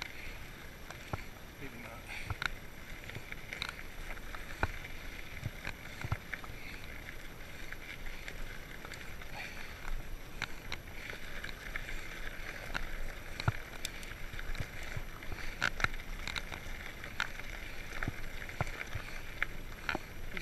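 Salsa Bucksaw fat-tire full-suspension mountain bike rolling along a dirt trail: tyre noise on the ground with frequent small knocks and rattles from bumps. A steady high-pitched buzz runs underneath.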